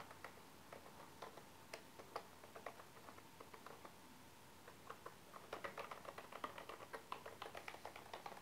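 Faint key clicks of a wireless keyboard being typed on. The keystrokes are scattered at first, then come in a quicker, denser run from about five and a half seconds in.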